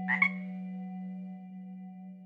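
A frog gives a short double croak right at the start, over a sustained low musical drone that slowly fades.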